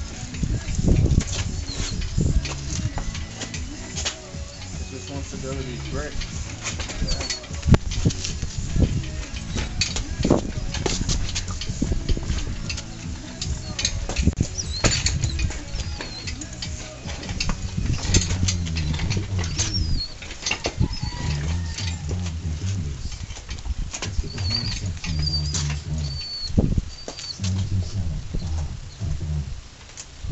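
An engine and transmission hanging from an engine hoist's chain as they are steered into place: scattered metal clinks and knocks over a steady low rumble on the microphone. A few short bird chirps come through, around the middle and again later.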